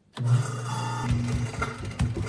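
A wall switch clicks and a kitchen sink garbage disposal starts up with a steady low motor hum and grinding, with knocking and rattling from about a second in.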